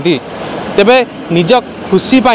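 A man speaking, with a short stretch of steady background hiss between phrases just after the start.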